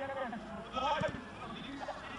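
A man's voice speaking in a raised, drawn-out way, in two bursts: the sound of a match commentator calling the play.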